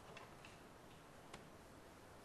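Near silence with four faint, sharp clicks, the strongest about one and a third seconds in.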